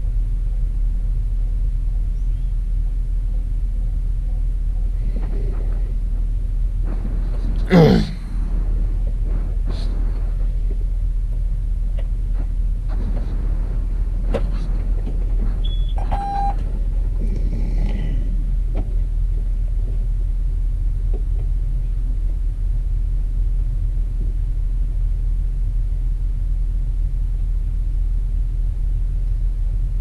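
Steady low rumble inside a John Deere 6170R tractor cab. About eight seconds in there is a single short loud sound. Around sixteen seconds there are brief electronic beeps as the cab display restarts after the key is cycled.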